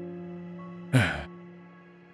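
Soft background music of held, sustained notes, with a man's breathy voiced sigh about a second in that falls in pitch.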